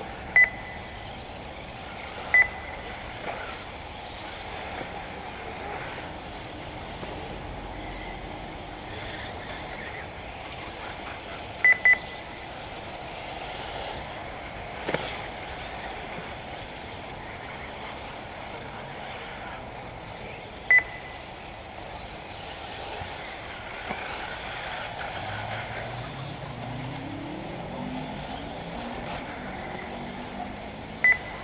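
Short, sharp high beeps from the race's lap-timing system, five in all with a quick pair about twelve seconds in, over a steady outdoor background of distant electric 1/8 RC buggies running on the track.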